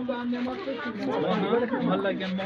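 Several people talking at once in overlapping voices, a loose chatter in which no single speaker stands out.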